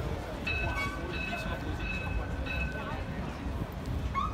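Busy city-boulevard ambience: a steady low traffic rumble with passers-by talking. From about half a second in until about three seconds, a high, steady squeal of several pitches sounds over it, briefly breaking off and resuming.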